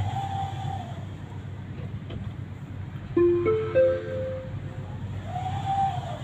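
Electronic signal tones inside a stopped tram over its steady low hum: a held tone for about a second at the start and again near the end, and a three-note rising chime about three seconds in.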